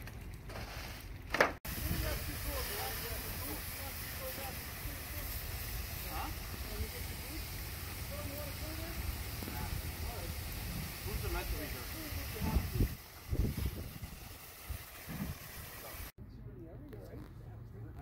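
Steady hiss of a fire hose stream spraying water onto the smouldering debris of a knocked-down shed fire, with faint voices behind it. The hiss cuts off abruptly near the end.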